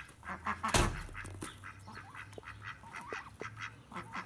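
Blue Swedish ducks quacking in quick, repeated calls as feed scraps are brought out, with one loud thump about a second in.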